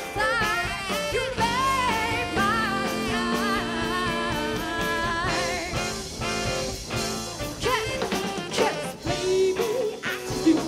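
Live band playing a jazzy pop number: drum kit and lower accompaniment under a wavering lead melody, with cymbals washing in about halfway through.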